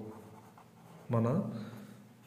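A pen writing by hand on paper on a clipboard, faint, with one short spoken word a little over a second in.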